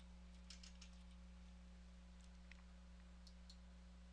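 Faint computer keyboard keystrokes, a few scattered taps, over a low steady electrical hum.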